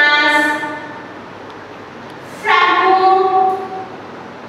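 A woman's voice speaking slowly, drawing out two words on long, nearly steady pitches, one at the start and one from about two and a half seconds in, with low room noise between.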